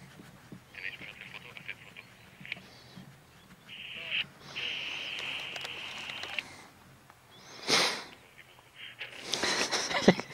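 A voice coming over a handheld walkie-talkie, thin and tinny, answering "no, no tengo, negativo". Near the end there are two short bursts of noise.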